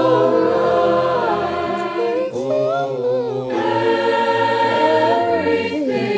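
Mixed-voice virtual choir, separate home recordings layered together, singing a traditional spiritual in harmony on long held notes, with a short break about two seconds in.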